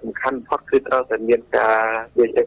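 Speech only: a radio news voice speaking in Khmer, with one drawn-out syllable near the end.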